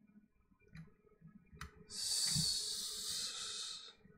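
A person exhaling hard near the microphone: one hissing breath of about two seconds, starting about halfway in and cutting off near the end, just after a faint click.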